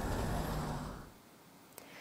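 Expressway traffic: a steady rush of passing road vehicles that fades out about a second in.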